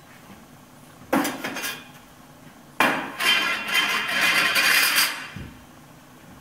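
Steel stove pipe pieces being handled and set down. A sharp metallic clank comes about a second in, then a second clank near the middle, followed by about two seconds of ringing, scraping metal-on-metal.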